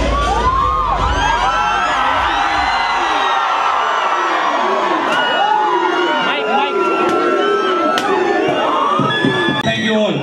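A large crowd cheering and shouting, many voices overlapping, with a few long held whistles in the second half.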